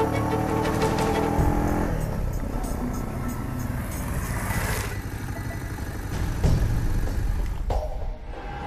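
Background music with held string notes, giving way about two seconds in to a motor vehicle running, whose noise swells and drops off about five seconds in. A thump follows near the end.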